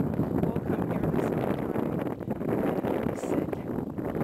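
Wind buffeting the camera's microphone: a loud, fluctuating rushing rumble.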